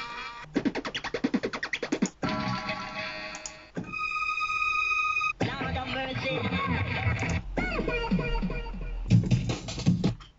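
Short 8-bit samples played back one after another on an Amiga 1200, including a female vocal 'ahh' and other vocal snippets, a rapid stutter, a steady electronic tone and a deep bass near the end. Each sound cuts off abruptly as the next is triggered.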